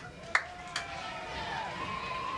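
Open-air stadium ambience with distant voices on the field, broken by a sharp click about a third of a second in and a softer one shortly after.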